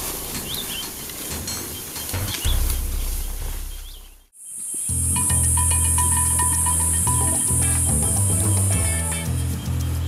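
Outdoor field sound with a few short bird chirps, fading out about four seconds in. Background music with steady low notes then comes in and carries on.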